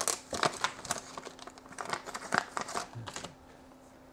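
Clear plastic bag crinkling and rustling in the hands as it is opened and a small circuit board is pulled out. The crackling is irregular and dies away a little after three seconds in.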